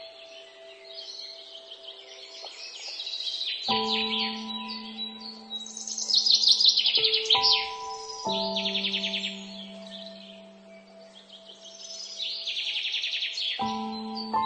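Slow, calm piano music, a few soft chords each left to ring, with birdsong mixed over it: bursts of rapid high chirping trills, loudest about six seconds in.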